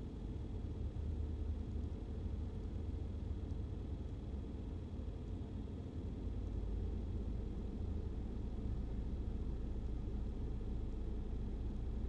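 Quiet room tone: a faint, steady low hum with nothing else happening.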